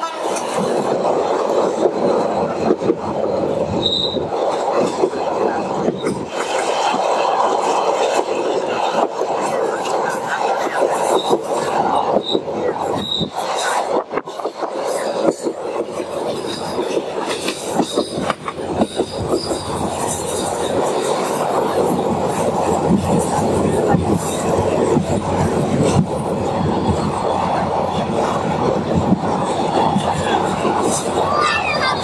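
Passenger train running along the track, heard from inside a carriage: a steady rattle and clatter of wheels and carriage, with a few short high squeaks in the first half.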